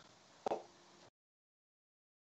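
Faint room tone with one short click-like pop about half a second in. The sound cuts off abruptly to total silence a little after a second.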